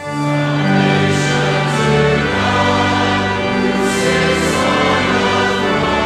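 Church choir singing a hymn in parts with instrumental accompaniment, long held notes; a new phrase begins right at the start after a brief breath in the music.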